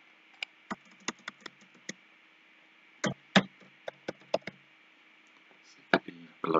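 Computer keyboard keystrokes typing a word: a run of quick clicks in the first two seconds, then a second, louder run about three seconds in.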